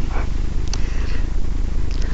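Steady low hum with a faint hiss underneath, and a single faint click about three-quarters of a second in.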